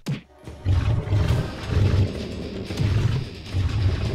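Video game audio: background music with a regular low beat, under the roars of monsters fighting. The sound drops out briefly at the very start.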